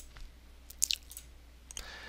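Low steady electrical hum on a quiet recording microphone, with one short sharp click a little under a second in.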